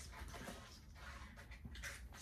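Faint rustling and light handling noises from hands reaching into a cardboard box, with a few soft ticks.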